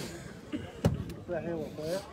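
One sharp slap of a volleyball being struck by a player's hands, a little under a second in, followed by a smaller click.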